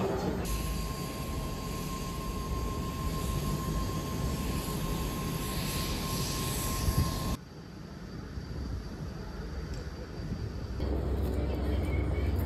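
Jet airliner engines running, a steady whine over a broad rushing noise. It cuts off abruptly about seven seconds in, leaving fainter background noise, and a low rumble comes in near the end.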